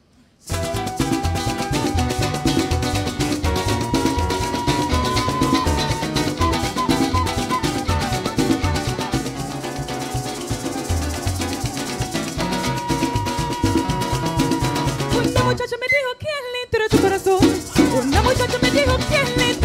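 Live parang band music starting suddenly about half a second in: guitars strummed over steady percussion, with a sustained melody above. Near the end the percussion drops out for about a second, leaving the melody alone, before the full band comes back in.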